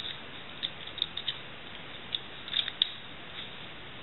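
Light, scattered metallic clicks and ticks as a scalpel blade is handled and fitted onto a metal scalpel handle, over a steady faint hiss.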